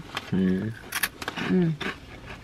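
Someone eating potato chips: a few sharp crunches and crinkles of the chip bag, between two short 'mm' hums of enjoyment.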